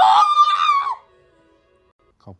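A woman's high-pitched excited squeal. It rises and then holds on one high note for about a second before breaking off.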